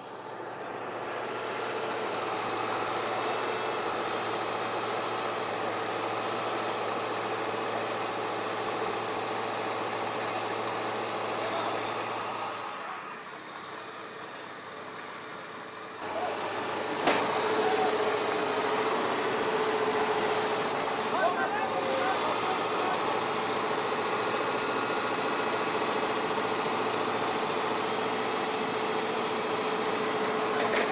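A vehicle engine idling steadily, with voices in the background. Past the middle the sound dips, then comes back louder, with a sharp click and a steady hum.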